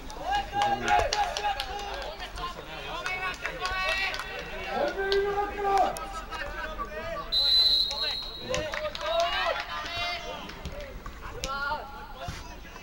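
Voices calling out across a football pitch, and about seven and a half seconds in, a single short, high referee's whistle blast, which signals the kickoff from the centre circle.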